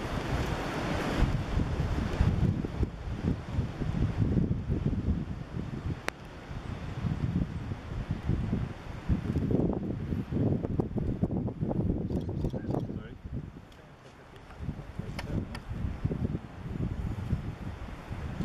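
Wind buffeting the camera's microphone in uneven gusts, a low rumble that dies down briefly about three-quarters of the way through.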